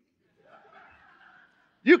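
Faint chuckling from the congregation, starting about half a second in and lasting about a second.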